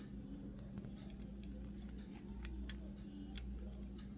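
Faint small clicks and taps of a diecast metal toy car being handled and turned in the fingers, over a steady low hum. The clicks come irregularly, several in the second half.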